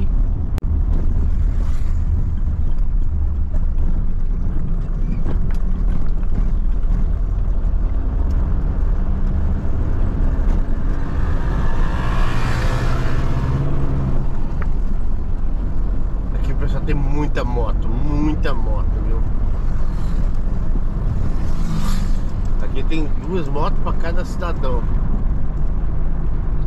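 Inside a Mercedes-Benz Sprinter van on the move: the engine and tyres make a steady low drone. About halfway through, a swell of noise rises and fades as a motorcycle passes.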